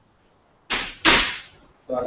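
Sugar tipped from a bowl into a pan of cooked carrots, heard as two short hissing rushes about a second in, the second one louder.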